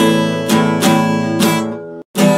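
Epiphone acoustic guitar being strummed: a few chord strums in uneven rhythm, the last one left to ring and fade near the end.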